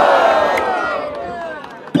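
A crowd of many voices shouting together, reacting to a rap-battle punchline, in one long drawn-out shout that rises and then falls in pitch. It is loud at first and dies away over about a second and a half.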